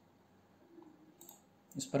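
Quiet room tone, with one brief sharp click a little past a second in. A man starts speaking near the end.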